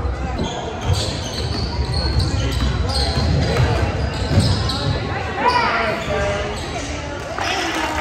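Basketball game sounds in a gym: a ball bouncing on the hardwood court, with players' and spectators' voices echoing in the hall.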